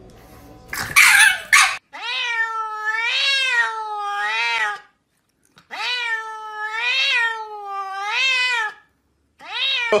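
A grey-and-white domestic cat meowing: two long, drawn-out meows of about three seconds each, wavering in pitch, with a short pause between them. A brief harsh noise comes just before the first meow.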